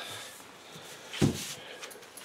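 One dull wooden knock about a second in, as the oak sled frame is turned around and set down on the workbench, over faint room noise.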